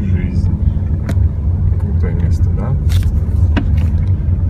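Steady low rumble of a car driving slowly along a rough road, heard from inside the cabin, with a few short sharp knocks and rattles.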